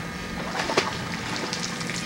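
Steady background noise of an outdoor swimming pool with faint water sounds, under a low steady hum, with a faint tap about three quarters of a second in.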